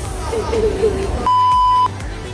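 A single steady electronic beep, one pure high tone lasting about half a second, starting a little over a second in. The other sound drops out completely beneath it, as with a censor bleep added in editing.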